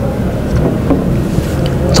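Low rumbling noise on a clip-on microphone, with a few faint clicks: the rustle and handling noise of the wearer moving his arm and setting a drinking glass down.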